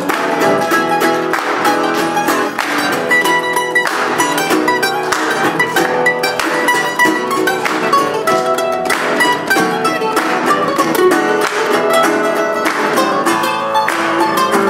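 A blues played on mandolin and metal-bodied resonator guitar, the mandolin picking lead lines over the guitar, with a steady stream of quick picked notes.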